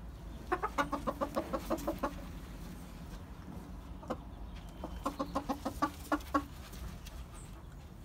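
Small Thai game rooster, a bantam, clucking in two quick runs of short clucks, about six a second, with a pause between the runs.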